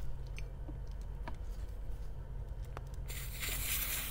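Small clicks as the cordless tyre inflator's hose chuck is worked off the tyre valve stem, then about three seconds in a hiss of air escaping at the valve as the chuck comes free. A low steady hum sits underneath.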